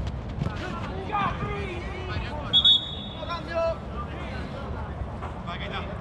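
Players' voices and shouts carrying across an open football pitch. A short, high whistle blast comes about two and a half seconds in, and there is a sharp knock at the very start.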